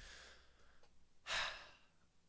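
A man's breaths close to the microphone: a soft exhale at the start, then a louder breath about a second and a half in.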